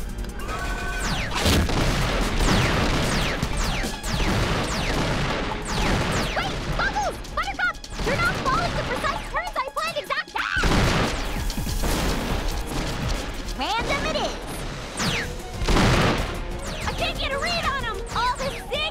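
Cartoon fight-scene sound effects over an action music score: repeated crashes and booms, falling whooshes, and short wordless yells and grunts.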